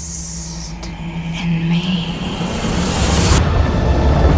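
Film trailer soundtrack: dark, ominous music with a low held note, swelling louder near the end.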